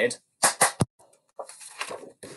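Three quick hand claps about half a second in, clapping out the "lemonade" rhythm of two semiquavers and a quaver. A quieter rustle follows near the end as a paper rhythm card is handled.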